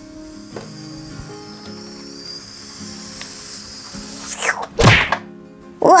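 Soft background music, with a light knock about half a second in and a loud thud-like hit about five seconds in. The knocks come from a plastic toy doll and toy skateboard being handled on a tabletop.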